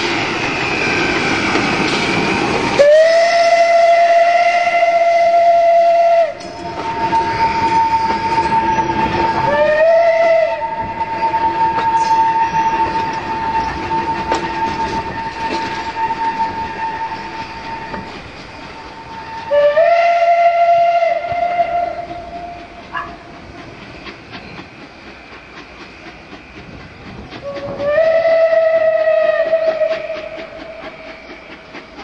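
Steam locomotive whistle sounding four times, a long blast first, then a short one and two more of about two seconds each, while the train runs past on the track. A thin steady tone carries on between the first blasts.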